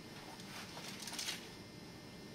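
Faint rustling and light clicking of backpack shoulder-strap webbing and a chest clip being handled as the front straps are fastened together.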